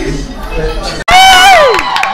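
Crowd chatter, then a cut about a second in to a loud, long, high-pitched cheering whoop from one voice that falls away at its end.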